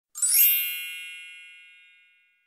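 A single bright chime sound effect, a logo sting: it opens with a quick rising shimmer, then rings on in many high tones and fades away over about two seconds.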